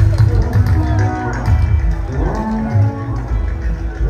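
Jùjú band music: a heavy bass line under pitched tones that glide up and down.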